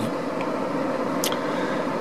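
Steady hiss of a car's air-conditioning blower inside the closed cabin, with one brief click a little past halfway.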